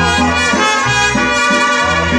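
Mariachi band playing live: trumpets carry a held passage over violins, strummed guitars and a bass line that pulses about twice a second.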